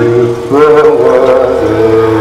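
Men singing a qaswida into microphones in long, held chanted notes, a new phrase rising in about half a second in over a low sustained tone.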